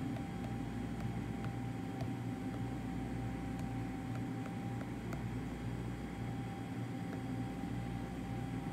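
Refrigerated vending machine running with a steady low hum and a faint thin whine, with a few faint taps of a fingertip on its touchscreen keypad.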